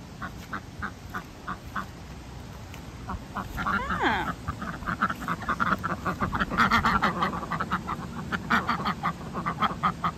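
Pekin ducks quacking: a few spaced calls at first, then a faster, louder run of quacks from about three seconds in.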